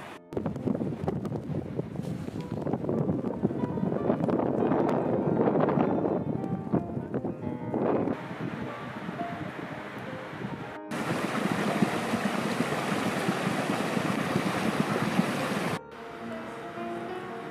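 Steady rushing outdoor noise under faint background music. The noise drops out abruptly twice where it is cut, and after the first cut it is brighter and hissier.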